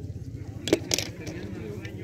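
Small die-cast toy cars clicking against one another as they are handled in a heap. Two sharp clicks come close together a little under a second in.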